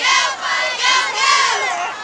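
Crowd in the stands shouting and cheering, with several loud, high-pitched yells in short bursts.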